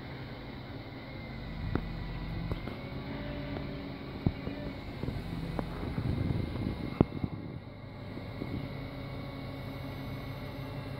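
Utility bucket truck's engine running steadily, louder for several seconds in the middle while the hydraulic boom moves the bucket. A few sharp knocks stand out, the loudest about seven seconds in.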